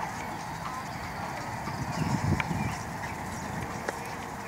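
A horse's hooves trotting on sand arena footing, soft thuds over steady outdoor background noise, with a brief low rumble about halfway through.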